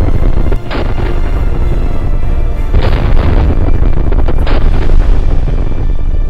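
Muzzle-loading field cannon firing: three heavy booms with a rolling rumble, about a second in, near three seconds and near four and a half seconds, over music.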